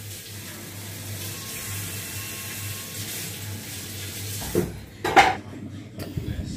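A steady hiss of kitchen noise, then two short knocks of crockery near the end, the second louder.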